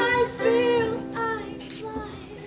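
A woman singing with vibrato to her own ukulele strumming; the singing grows quieter in the second half.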